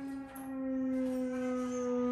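Glissando flute holding a low note. The note breaks briefly about a third of a second in, comes back louder, and slides slowly down in pitch.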